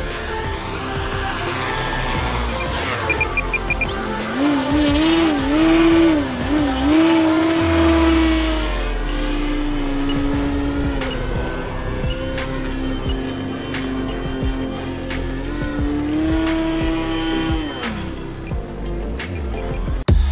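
Background electronic music over an RC aerobatic biplane's electric motor and propeller, whose pitch rises and falls in wavy sweeps as the throttle changes and holds steady for stretches.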